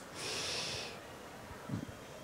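A person's short intake of breath, a soft hiss lasting under a second, in a pause between spoken sentences.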